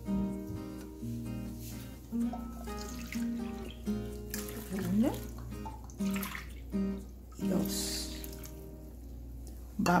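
Water poured into a stainless saucepan of cut squash, a short splashing pour in the second half, over steady background music.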